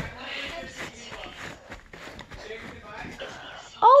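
Homemade slime being flipped over and handled by hand: soft, irregular squishing and rustling noises.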